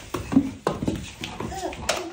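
A toddler babbling in short bursts while playing, with several sharp knocks and taps; the sharpest knock comes just before the end.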